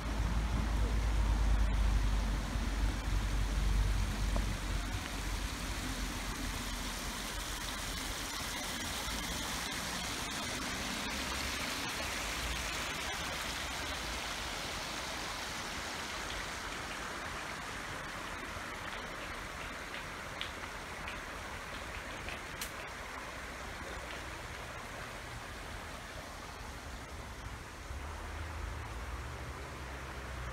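Shallow river water flowing and spilling over a low concrete step, a steady rushing hiss, with a low rumble loudest in the first few seconds.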